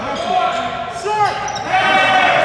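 Basketball sneakers squeaking on the gym court during play, several short squeaks rising and falling in pitch, with a basketball bouncing.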